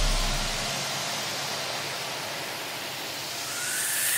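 A hiss of white noise after the music's bass fades out, dipping and then swelling toward the end with a faint rising tone, as a transition sweep leading back into the music.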